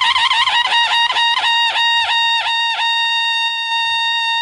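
Background music: a solo high-pitched wind instrument plays a wavering trill, then a run of quick repeated notes, then settles on one long held note about three seconds in.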